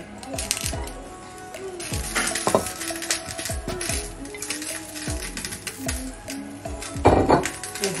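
Background music, with potatoes being dropped into a steel pot of water and knocking against the pot, and one louder clatter about seven seconds in.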